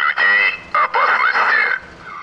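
A recorded Russian-language announcement played through a vehicle-mounted street loudspeaker: a thin, distorted voice in short phrases with brief pauses. It is a coronavirus self-isolation appeal urging people to return home and stay off the streets.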